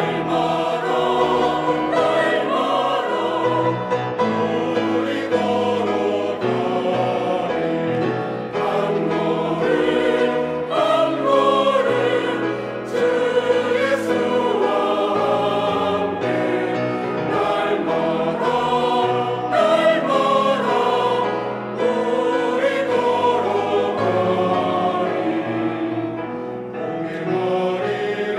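Mixed church choir singing a slow Korean hymn-style cantata in several parts, with grand piano accompaniment.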